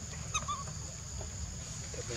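A brief, high-pitched animal call about a third of a second in, over a steady high whine.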